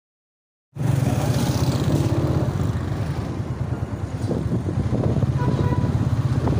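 A vehicle's engine running steadily with a rapid low pulsing, heard from on board as it drives along the street. It cuts in suddenly under a second in, after dead silence.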